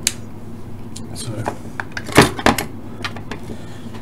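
Sharp clicks and knocks of test leads and crocodile clips being handled against a small plastic instrument case, with one loud knock a little past halfway and a few lighter clicks after it, over a steady low hum.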